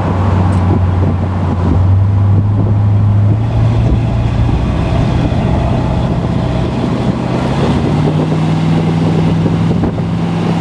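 Chevrolet ZZ4 350 small-block V8 crate engine in a 1975 Corvette, heard from the cabin while driving: a steady engine drone with wind and road noise. The engine note rises about two seconds in and again about eight seconds in.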